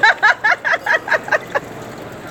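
A person laughing, a quick run of about eight short "ha" bursts over a second and a half, trailing off.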